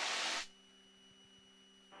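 Hiss of cabin noise through an aircraft intercom that cuts off suddenly about half a second in, as the headset microphone's squelch closes. What is left is near silence with a faint steady electrical hum, which rises slightly near the end.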